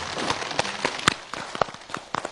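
Scattered hand claps from a studio audience, irregular and sharp, the loudest about a second in, becoming more frequent toward the end.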